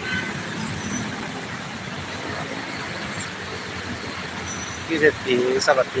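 Steady, even noise of heavy city road traffic, engines and tyres of a slow-moving jam of cars and buses blending together with no single vehicle standing out.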